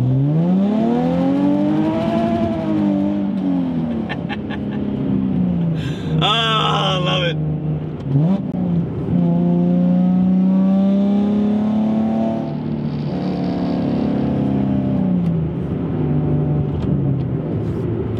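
Nissan 370Z's V6 engine under way, its note rising and falling in pitch as the revs climb and drop through the gears. A short, higher warbling sound cuts in about six seconds in.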